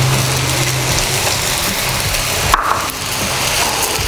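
Stir-fried noodles, sawi greens and bean sprouts sizzling in a hot wok, a steady sizzling hiss, with a single short knock about two and a half seconds in.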